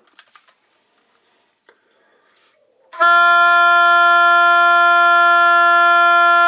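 An oboe plays one long, steady F above middle C, starting about halfway through after a few faint clicks.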